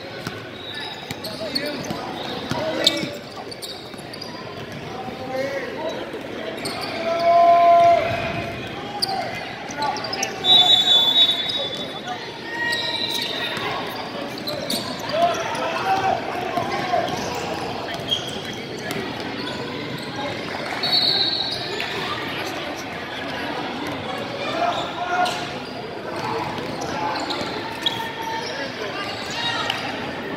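Basketball game play on a hardwood gym court: the ball bouncing, short high squeaks, and players' and spectators' voices echoing through the hall.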